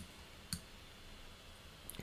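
Two sharp computer mouse clicks about half a second apart, over quiet room tone.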